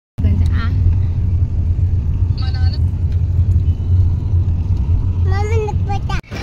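Inside a moving car: a steady low engine and road rumble fills the cabin, with short bits of voices over it.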